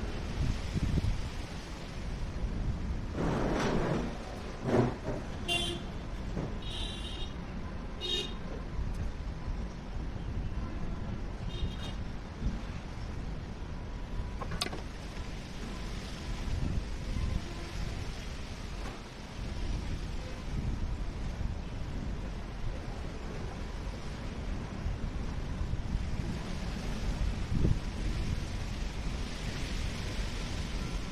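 Steady background road-traffic rumble, with several short vehicle horn toots in the first half.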